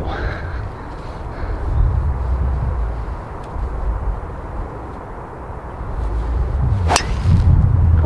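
A golf driver striking a ball off the tee: one sharp crack about seven seconds in, struck cleanly. Before it, a low rumble of wind on the microphone.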